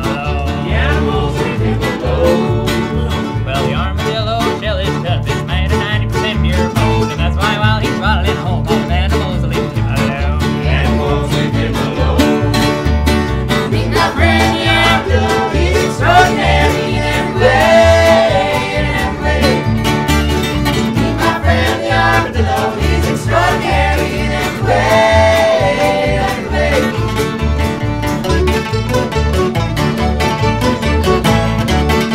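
Acoustic string band playing live: mandolin, acoustic guitars, fiddle, upright bass and accordion together over a steady plucked beat, in a bluegrass-style instrumental stretch of the song.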